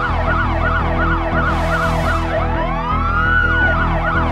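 Police car siren over background music. It opens with a fast yelp of about four up-and-down sweeps a second, switches to a slow rising wail about two seconds in, and goes back to the yelp near the end.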